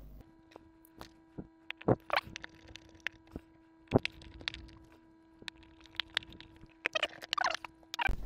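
Scattered light clicks and taps of small screws being handled and fitted into the bottom of a black plastic project box, the sharpest about two and four seconds in. A faint steady hum sits underneath.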